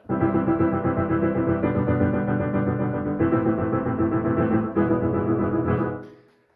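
Piano playing fast repeated chords, packing many notes per second. The harmony changes about every second and a half, four chords in all, and the sound dies away just before the end.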